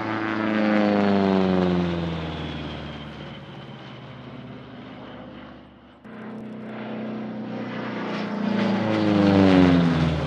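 Republic P-47D Thunderbolt's Pratt & Whitney R-2800 radial engine and propeller making two fly-bys. Each pass swells to its loudest as the fighter goes by, then drops in pitch as it pulls away. About six seconds in the sound jumps abruptly to the second pass, which builds to the loudest point near the end before falling in pitch again.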